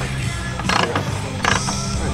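Harley-Davidson V-twin chopper being kick-started: a few clunks from the kick pedal as the engine turns over without firing yet, with music still playing underneath.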